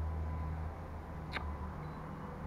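Quiet room tone: a low steady hum with one faint, short click about a second and a half in.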